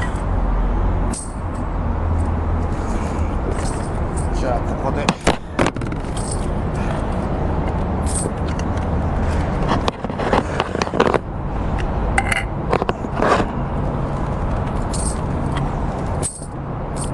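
Knocks, scrapes and rustles of something handled right at a phone camera's microphone, over a steady low city rumble.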